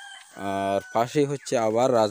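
A rooster crowing: a few short calls, then a longer drawn-out call whose pitch rises and falls near the end.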